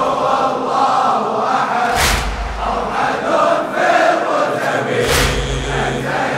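A large crowd of men chanting a Shia mourning latmiya in unison, with a heavy, unified chest-beating strike about every three seconds, twice here.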